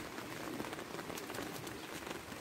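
Light rain falling, an even patter of small drops.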